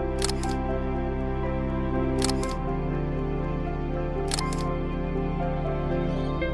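Soft background music with a camera shutter clicking three times, about two seconds apart, each a quick double click.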